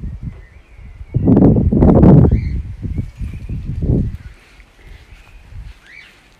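Wind buffeting a phone's microphone: loud rumbling gusts from about one to two and a half seconds in, and a weaker gust near four seconds.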